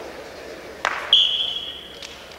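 A referee's whistle blown once: a single steady high tone lasting about a second, starting the wrestling action. A sharp click comes just before it.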